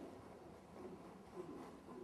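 Near silence: faint room tone, with a couple of soft, faint thuds.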